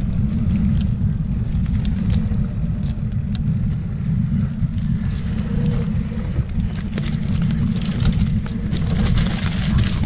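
Wind rumbling on the microphone of an electric mountain bike ridden down a rocky trail, with scattered clicks and rattles from the bike and tyres over the rocks. The knocks come thicker near the end.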